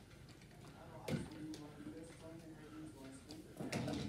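Plastic baby bottle of formula being shaken and handled, with a few faint knocks, the loudest about a second in and more near the end.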